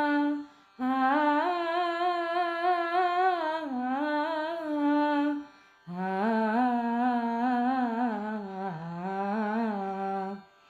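A voice humming a wordless melody with wavering, gliding ornaments. It comes in three phrases broken by short pauses: about half a second in, at about five and a half seconds, and at the very end. The later phrases are pitched lower than the first.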